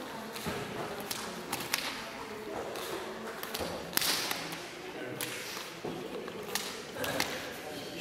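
Sharp slaps of bare forearms and hands meeting as two people strike, block and trap at close range in a Jeet Kune Do drill. About a dozen irregular smacks.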